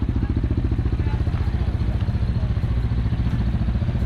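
A motorcycle engine idling steadily, with a rapid, even pulsing.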